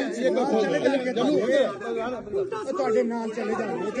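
Several men talking over one another in a crowd, their overlapping voices continuous and close to the microphone.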